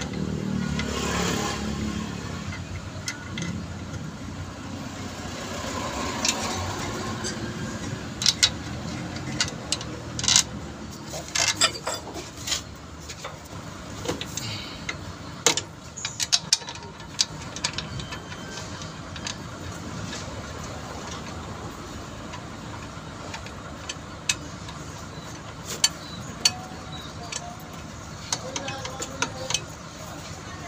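Scattered sharp metallic clicks and knocks from a heavy clutch pressure plate and its bolts being handled and fitted onto the flywheel, over a steady low background hum.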